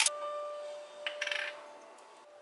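A seasoning jar shaken briefly over food, a short rattle about a second in, with a faint steady tone fading out underneath.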